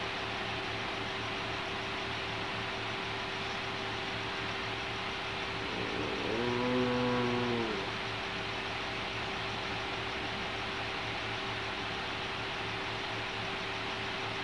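Steady tape hiss with a faint hum, and about six seconds in a single low, drawn-out male groan lasting about a second and a half.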